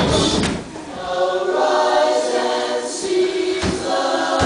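Recorded music of a vocal group singing sustained chords in close harmony, with a brief drop in level just after half a second in. A thud about half a second in and another near the end.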